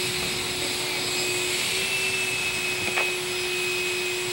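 A steady mechanical hum at one unchanging pitch over a constant hiss, with a faint click about three seconds in.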